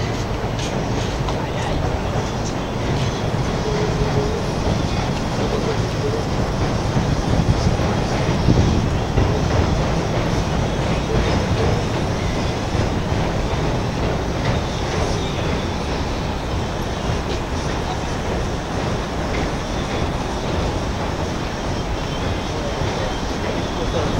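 A train rumbling past in steady outdoor city noise, loudest about seven to ten seconds in.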